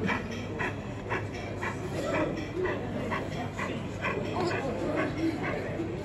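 Sound module of an O gauge model Great Western pannier tank locomotive chuffing slowly, about two beats a second, with exhibition-hall chatter behind.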